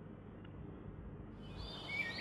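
Faint steady background hiss, with high-pitched bird chirps starting about one and a half seconds in.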